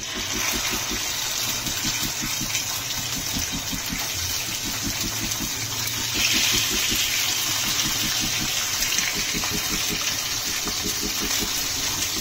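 Mutton chops sizzling steadily in hot oil in a frying pan as they are laid in one at a time; the sizzle swells about six seconds in as the second chop goes in.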